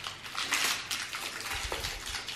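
Small plastic wrapper crinkling and crackling as it is torn open by hand, in irregular rustling bursts.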